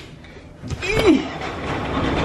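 Wind buffeting the microphone and din from construction below swell up about two-thirds of a second in, as the balcony is opened to the outside. A short laugh rides over the noise.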